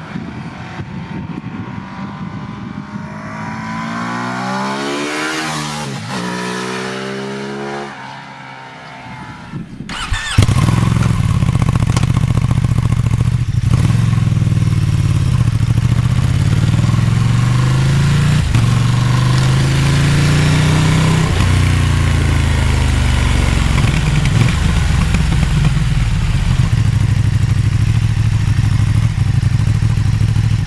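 Ducati Streetfighter V2's 955 cc L-twin engine and exhaust. The bike rides up and past, swelling in level with its pitch rising and then falling away. After a cut, heard close at the silencer, it accelerates hard through the gears, the pitch climbing and dropping back at each upshift.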